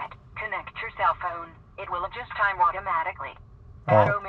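A 70mai dashcam's built-in English voice prompt speaks through the camera's small speaker in a thin, tinny voice for about three seconds. The message asks for the phone to be connected, because the camera has gone a long time without connecting to its app.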